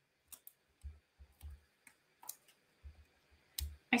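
Faint scattered clicks and soft taps of cardstock being handled while foam adhesive dimensionals are peeled off their backing sheet and pressed on, with a couple of louder taps near the end.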